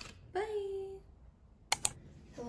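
A short wordless vocal sound, then two sharp clicks in quick succession near the end, from photocards and a clear plastic case being handled on a desk.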